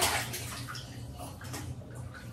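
Bath water splashing and trickling in a baby bathtub as a baby is bathed, loudest at the start and settling into small, scattered splashes.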